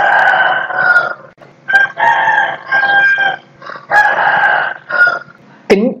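Rooster crowing: about four crows of roughly a second each, one after another.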